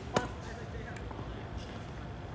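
A tennis ball struck by a racket close by: one sharp pop a fraction of a second in, a topspin forehand return of serve.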